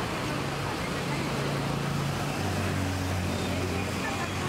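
Street traffic beside the stall: a vehicle engine's steady low hum that drops to a lower note a little past halfway, over general roadside noise and voices.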